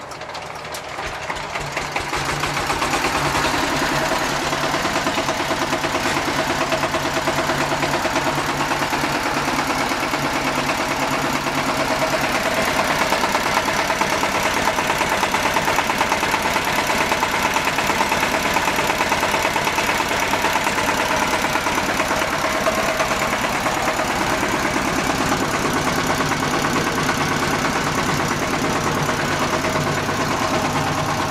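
Kranti DI-1515 power tiller's single-cylinder diesel engine coming up to speed over the first couple of seconds, then running steadily with a fast, even beat.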